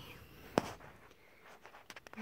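Quiet indoor room tone with one sharp click about half a second in and a few faint ticks near the end.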